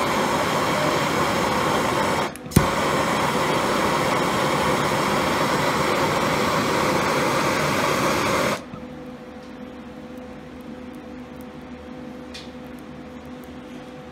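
Handheld gas torch flame hissing steadily while heating a steel plate for soldering. It drops out briefly about two seconds in and comes back with a sharp click, then shuts off at about eight and a half seconds, leaving a low, steady hum.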